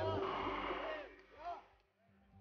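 A man talking in short phrases, the voice dying away near the end.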